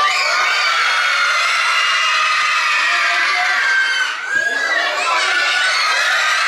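A hall full of young children shouting and cheering in high-pitched excitement, with a brief lull about four seconds in.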